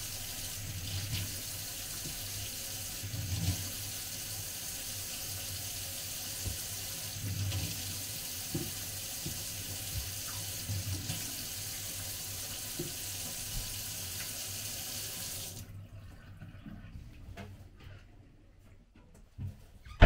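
Kitchen tap running a thin, steady stream into a stainless steel sink: an even hiss of falling water. The water sound drops away sharply about three-quarters of the way through, leaving it much quieter.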